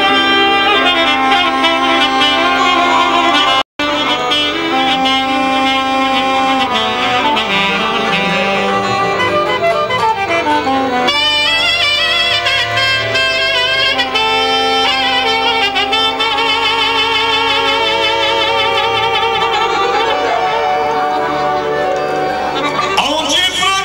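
Saxophone playing a fast, heavily ornamented Banat folk melody of the 'ascultare' listening-music kind, with quick runs, trills and wide vibrato. An accordion accompanies it. The sound drops out for a split second about four seconds in.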